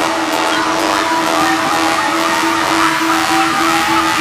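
Passage of an electronic dance track: one synth note repeating about four times a second over a dense, noisy wash.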